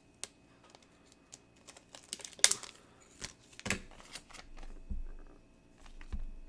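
Trading cards and rigid plastic card holders being handled on a table: scattered light clicks and taps, the sharpest one about two and a half seconds in.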